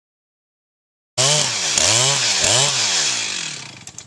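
Chainsaw revving up and down about three times, starting suddenly about a second in and fading away near the end.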